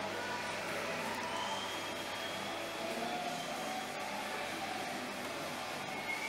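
Background music playing faintly over the steady hum and murmur of a public room.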